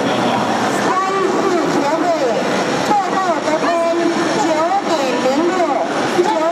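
Several voices shouting and calling out over a steady din of crowd noise, echoing in a large sports hall.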